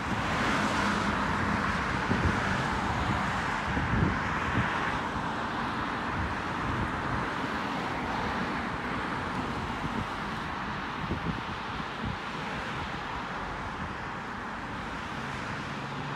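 Steady outdoor noise of wind rumbling on the microphone and the hiss of road traffic, louder for the first five seconds and then easing off.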